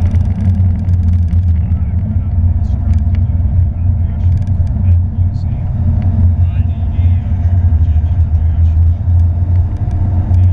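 Porsche 911 GT3's flat-six engine and the road noise at track speed, heard from inside the cabin: a loud, steady low rumble that carries on through the corner without a break.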